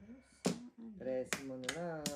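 Plastic mahjong tiles clacking against each other and the table as they are handled and drawn: a few sharp, uneven clicks.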